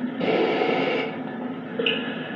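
Spirit box sweeping radio frequencies: a steady hiss of static and hum, with a louder burst of noise from about a quarter second in to one second, and a short blip near the end.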